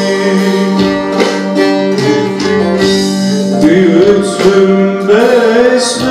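A male voice sings a Turkish soldier's folk song (asker türküsü) through a microphone and PA, over a plucked-string accompaniment. The instrument's steady notes carry the first few seconds, and the voice comes in with wavering, ornamented held notes about three and a half seconds in and again near the end.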